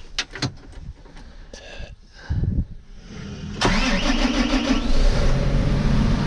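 Clicks and knocks of controls in a farm machine's cab, then the machine's large diesel engine cranks and starts about three and a half seconds in, and it keeps running loud and steady, heard from inside the cab.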